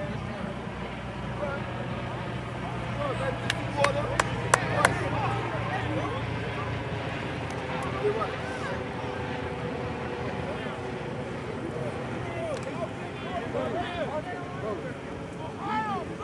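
Distant voices and calls from players and the sidelines, with no clear words. A steady low hum runs through the first half and fades out, and a few sharp cracks come close together about four seconds in.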